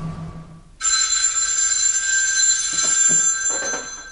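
Telephone ringing: one long ring of about three seconds starts about a second in and cuts off near the end.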